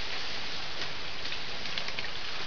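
Steady hissing background noise with a few faint clicks, as from a camera trap's microphone outdoors.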